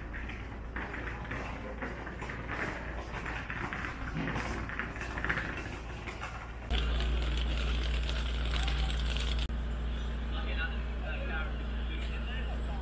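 Street ambience of indistinct voices from people walking past and sitting at café tables. About seven seconds in, a steady low rumble cuts in abruptly and the sound grows louder.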